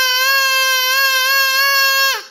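Paper cone party horn blown in one long, steady note with a slight waver.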